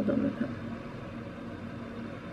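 A steady low mechanical hum, after the tail of a spoken word at the start.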